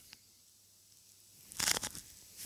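Near silence, then a brief burst of rustling and crackling near the end.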